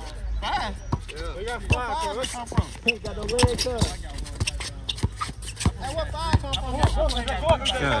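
A basketball being dribbled on an asphalt court: sharp bounces at an uneven pace, over players' voices and shouting.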